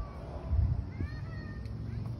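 The 455 big-block V8 of a 1975 Pontiac Grand Ville idling with a low, steady rumble. About a second in, a short animal cry rises and falls in pitch over it.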